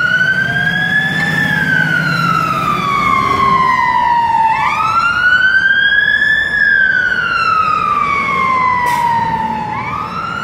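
Fire engine's wail siren, rising slowly in pitch and then falling away more slowly, each cycle about five seconds long, with the truck's engine running underneath as it pulls away on an emergency call.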